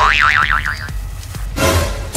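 Comedy 'boing' sound effect: a warbling tone that wobbles up and down several times in the first second, over background music, followed by a short noisy burst near the end.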